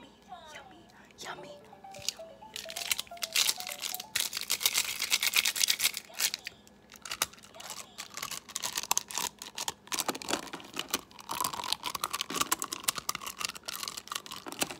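A bundle of plastic marker pens clicking and clattering together close to the microphone. The dense, rapid clicking starts about two and a half seconds in and carries on to the end.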